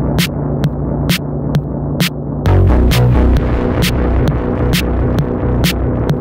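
Techno track with a steady beat: a crisp hi-hat-like hit about twice a second over deep, dense bass. About two and a half seconds in, the track gets louder as a heavier bass part comes in with a brief rising noise swell.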